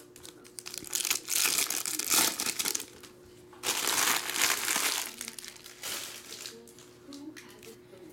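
Foil trading-card pack wrappers crinkling and crumpling in the hands, in two bursts: one about a second in and one near the middle, with quieter rustling after.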